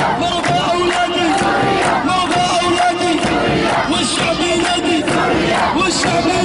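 A large crowd of protesters chanting slogans in unison, loud and rhythmic, with handclaps keeping time.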